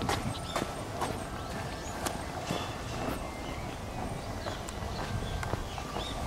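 Footsteps of someone walking with the camera, a series of light steps about two a second, over a steady low background noise.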